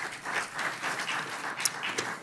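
Audience applauding: many overlapping hand claps.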